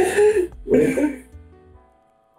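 Two men's laughter dying down into short breathy vocal sounds over the first second, leaving faint steady background music near the end.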